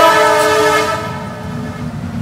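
A man's amplified voice held on one long steady tone and ringing on through the public-address system, fading away over about a second. A faint low rumble remains after it.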